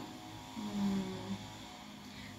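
A person briefly hums a single low, steady note about half a second in, lasting under a second, over a faint steady electrical hum.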